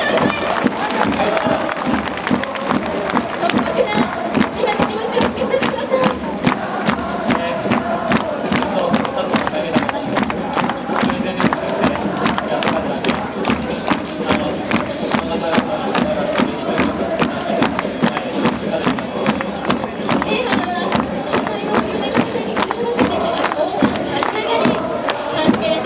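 Football supporters in the stands singing a chant together, over a steady rhythm of sharp beats.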